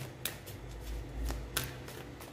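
Tarot cards being handled and shuffled in the hands, with a few light clicks and rustles.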